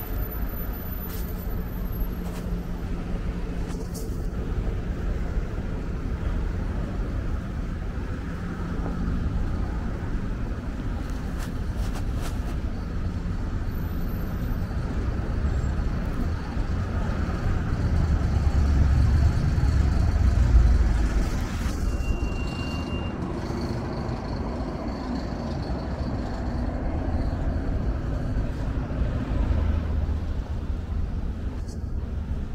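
City street traffic: cars and other vehicles running and passing along a busy downtown road, a steady low rumble that swells to its loudest about two-thirds of the way through as a vehicle passes close, then settles back.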